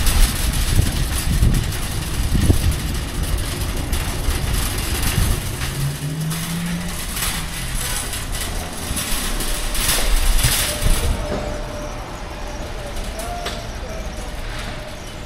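Metal wire shopping cart rattling and rumbling on its wheels as it is pushed over concrete pavement, with scattered knocks. The sound becomes quieter for the last few seconds.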